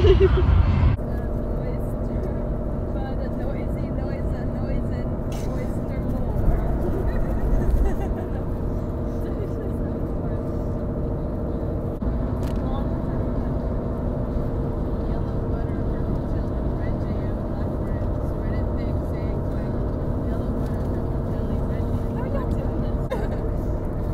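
Steady road and engine rumble inside a moving car's cabin, with a low hum. It is louder in the first second.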